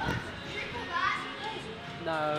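Children's voices and play chatter in the background, with no loud impacts.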